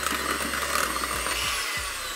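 Electric hand whisk running steadily, its beaters whirring through cream cheese in a glass bowl; the motor's whine dips slightly near the end.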